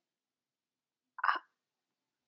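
One short vocal sound, a brief catch of a person's voice, just past a second in; otherwise silence.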